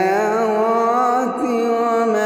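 A man's solo Quran recitation in melodic tajweed style, one long drawn-out vowel held with slow, gently wavering ornaments that rise a little at the start.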